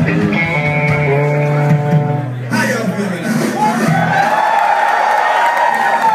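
Live rock band's electric guitar and bass hold a sustained chord that cuts off about two and a half seconds in. A long held note then swells and falls near the end, with voices underneath.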